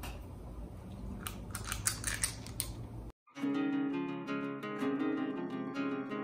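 A spring-release cookie scoop clicking a few times as choux-pastry dough is squeezed out. About halfway through, it cuts to plucked-string background music, which is louder.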